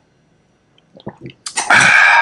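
A man gulps down a shot of green superfood drink, with small swallowing sounds about a second in, then lets out a loud, rough, throaty exhale like a growl near the end: a reaction to the drink's bad taste.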